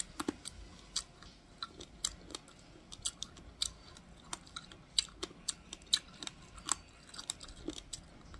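Uncooked black rice grains crunching as they are chewed close to the microphone, a quick, irregular run of sharp cracks.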